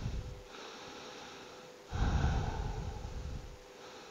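A person breathing slowly and audibly while holding a yoga stretch. One breath trails off in the first half second, and a second long breath starts about two seconds in and lasts nearly two seconds.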